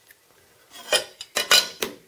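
After a short quiet spell, a quick run of four or five sharp clicks and clatters starts about a second in: small hard objects being picked up and set down on the table.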